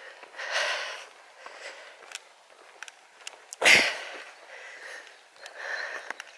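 A person breathing audibly close to the microphone while walking: three or four soft breaths a second or two apart, with a few faint clicks between them.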